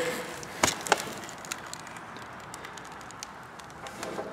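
Two light, sharp knocks about a second in, then faint steady background noise with a few small ticks.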